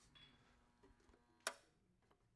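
Near silence with a single sharp click about one and a half seconds in, from a gas discharge tube being handled in its spectrum-tube power supply.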